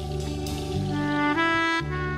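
Slow live band music: sustained bass notes under a long held melody note that steps up slightly in pitch about a second and a half in, then fades.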